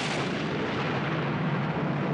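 Sea surf on a rocky shore: a steady, loud rushing noise with a deep rumble underneath, which starts abruptly.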